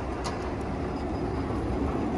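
Loaded manual pallet jack rolling across a concrete floor, its wheels making a steady rolling noise, with one brief click about a quarter second in.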